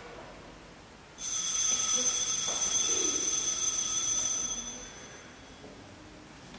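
A small bell is struck once, ringing high and clear, and fades away over about three seconds.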